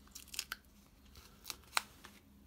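A handful of small clicks and crackles from mini foam adhesive dots being peeled off their backing sheet and pressed onto patterned cardstock, the sharpest one near the end.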